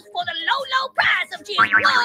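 A voice talking rapidly over background music.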